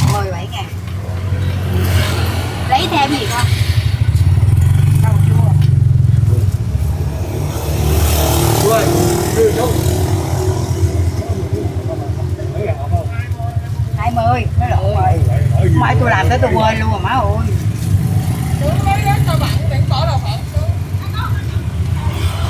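Busy street traffic: motorbike engines running and passing close by, loudest about four to six seconds in. People's voices talk over it, mostly in the second half.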